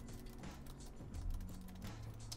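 Typing on a computer keyboard: irregular key clicks, over faint background music with low held notes.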